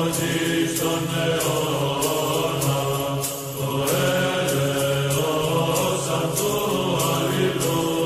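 Choral chant: voices singing long held notes over a steady low drone.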